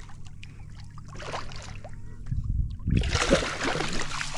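Hooked redfish thrashing at the surface beside a kayak, splashing water. Faint small splashes and ticks at first, then heavier splashing in the last second or so.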